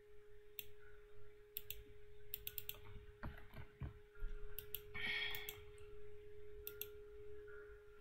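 Scattered computer mouse clicks, some single and some in quick runs, over a faint steady hum.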